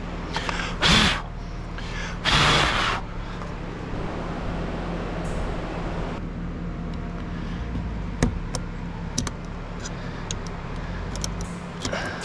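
Hand work on car interior trim and parts: two loud rustling scrapes about a second and two and a half seconds in, then scattered light clicks and taps, over a steady low hum.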